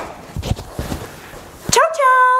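A few low thuds and rustles, then near the end a woman's sudden high-pitched squeal that rises and then holds one note.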